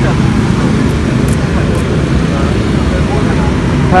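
Steady low rumble of outdoor background noise throughout, with faint voices.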